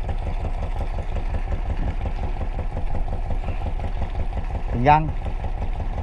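A boat's engine idling, a steady low pulsing rumble.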